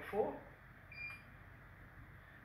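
A single short electronic beep from a multimeter about a second in, as its probe is held on the active terminal of a power point to read the circuit's resistance during a polarity test. It follows the tail of a spoken phrase at the start, over quiet room tone.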